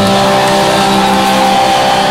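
Loud distorted electric guitars holding a chord that rings out as a steady drone, with no drum beats.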